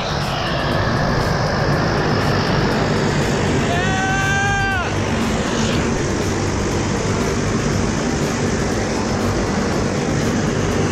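A propeller jump plane's engine running, a steady loud drone throughout. About four seconds in, a person lets out a drawn-out cheer lasting about a second.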